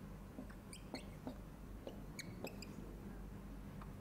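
A quiet room with a steady low hum, under a few faint scattered clicks and several brief high-pitched squeaks or chirps.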